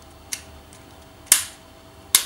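The yellow hand lever of a LEGO train track switch being flicked, throwing the plastic points: a faint click soon after the start, then a sharp click a little over a second in.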